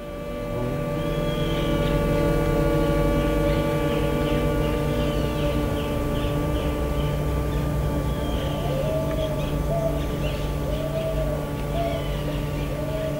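A steady drone of several held tones, fading in over the first two seconds and holding unbroken, with repeated short bird chirps above it.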